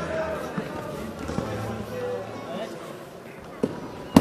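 Futsal ball struck and hitting the hardwood gym floor in two sharp knocks, about a second and a half in and again near the end. Under them are faint voices and calls of players and onlookers in the gym.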